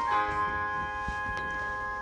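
Keyboard playing the close of a hymn introduction: a bell-like chord struck just after the start and held, slowly fading.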